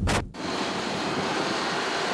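A brief burst of noise at the very start, then the steady hiss of a Honda CR-V driving on a damp road: tyre and wind noise with no clear engine note.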